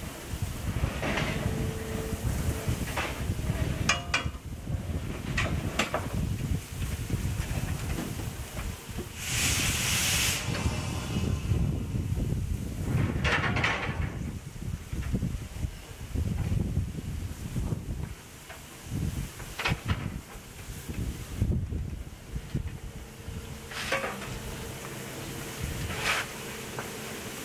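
Steam locomotive venting steam low by its cylinders and wheels, a steady hiss that swells into louder gushes twice, about nine and thirteen seconds in. Under it runs a heavy irregular rumble of storm wind buffeting the microphone.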